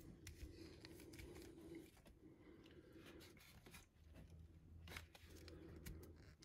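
Near silence with faint, scattered clicks and rubs of a plastic action figure being handled and turned in the fingers.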